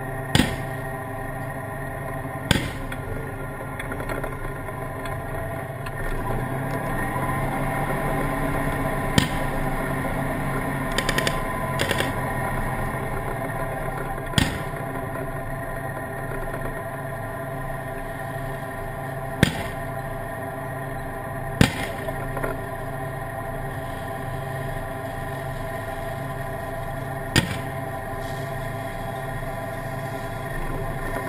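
A tank's engine drones steadily while sharp bangs of gunfire sound every few seconds, about nine in all, with a quick run of shots about eleven seconds in.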